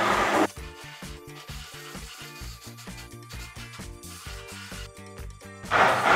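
Background music, with a Braun immersion hand blender whirring in a bowl of lemon curd for about half a second at the start and starting up again just before the end.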